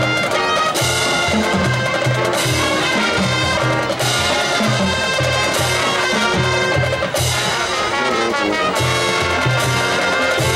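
High school marching band playing a Latin-style closer: brass section leading over a drumline, with a pulsing bass line and loud accents about every one and a half seconds.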